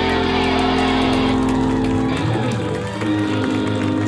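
Live rock band with electric guitars, bass and drums playing loudly. The guitars hold ringing chords. The cymbals and then the low end drop out around the middle, leaving sustained electric guitar chords ringing.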